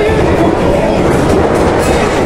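Loud crowd noise at a wrestling match: many voices shouting at once, blended into a dense, steady din.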